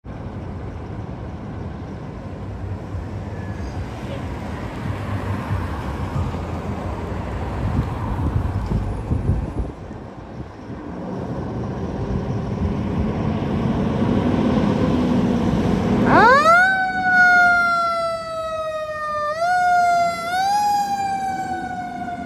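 Fire engine's diesel engine running and building up as the truck pulls off. A little past three-quarters through, a Federal Q mechanical siren winds up steeply, then slowly coasts down in pitch, rising again twice briefly as it is re-triggered.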